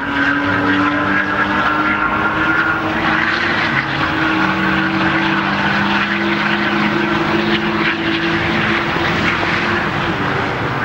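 Porsche sports cars running at speed on the track, their engine notes held steady as they pass; a second, lower engine note joins about four and a half seconds in.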